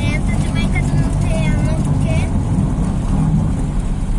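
Car driving along a dirt road, heard from inside the cabin: steady low engine and road rumble.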